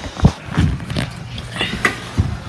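Handling noise from a phone being carried and swung while walking: irregular knocks and rustling, with a couple of louder low thumps in the first second.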